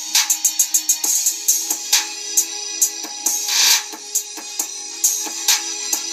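Background music: a drum-machine beat with fast hi-hat ticks and regular drum hits over a steady low held tone, with a swell of noise about three and a half seconds in.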